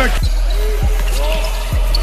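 A basketball being dribbled on an indoor court, three bounces under background music.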